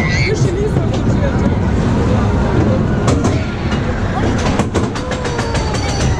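Mine-train roller coaster car rumbling along its track as it climbs, with wind buffeting the microphone. Sharp clacks from the track come now and then, with a quick run of them in the second half, and riders' voices are faintly heard.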